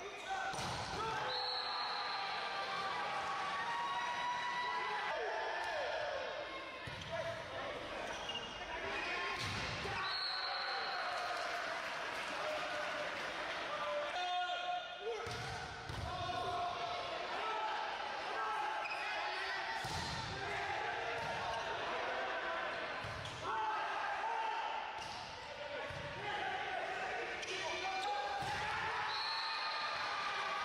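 Volleyball rallies in an echoing indoor hall: the ball smacking off hands and arms on serves, sets and spikes and thudding on the floor, with players shouting calls. Short referee's whistle blasts sound about a second in, about ten seconds in and near the end.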